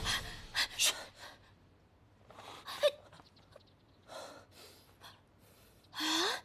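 A person breathing hard in several separate short gasps, spread about a second apart through the quiet.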